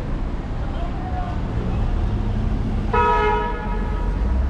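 Steady city traffic rumble, with a vehicle horn sounding once about three seconds in for about a second.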